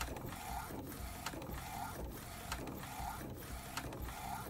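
McLaud MP1812 DTF printer running a print job, its print head carriage sweeping back and forth across the film in an even repeating rhythm with regular clicks.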